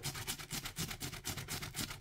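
A small brush scrubbing a wet, lathered leather glove web in quick, even back-and-forth strokes, a fast scratchy rhythm of bristles on leather.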